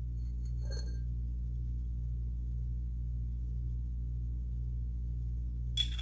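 Steady low hum made of several fixed tones, from background machinery or electrical equipment. It is joined near the end by a few sharp clinks of glassware being handled.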